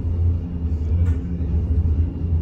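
Steady low rumble inside the passenger saloon of a Class 399 tram-train running along the track.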